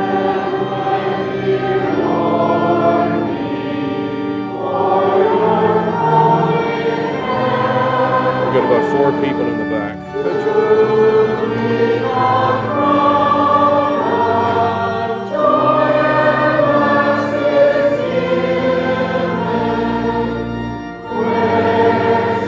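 A group of voices singing a slow hymn over organ accompaniment, in held notes that change every second or two.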